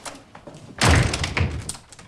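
A door shut hard with a loud thud about a second in, a second thud following about half a second later, then fading away.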